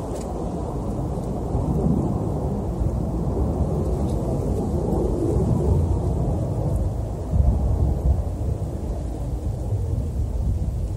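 Wind buffeting the camera's microphone: a continuous low rumble that swells in gusts, with a stronger gust about seven and a half seconds in.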